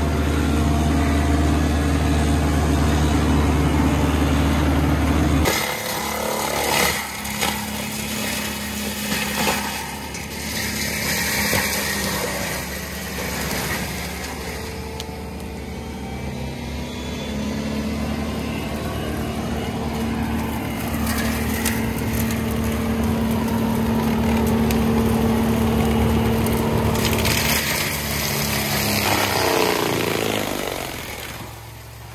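A small grass-mulching machine's engine running steadily under load. About five seconds in, the sound switches to a Takeuchi compact track loader driving a forestry mulcher head: engine and spinning mulcher drum running with a steady tone, its level rising and falling as the drum chews through undergrowth and wood.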